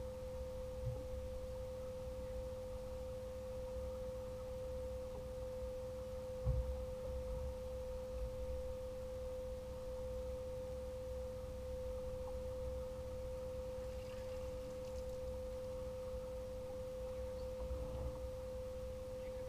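A steady single-pitched tone, unchanging, over a low rumble, with a thump about six and a half seconds in.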